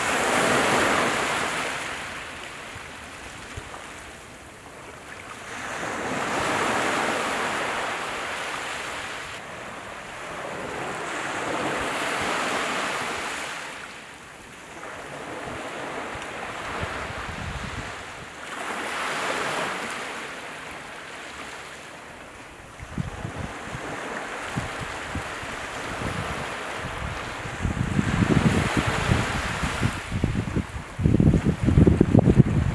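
Small waves surging and washing on the shore in slow swells about every six seconds. From about two-thirds of the way in, gusts of wind buffet the microphone with a low rumble, strongest near the end.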